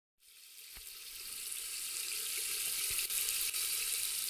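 A steady high-pitched hiss with no tune or voice in it, fading in over the first second and a half, with two faint low thumps.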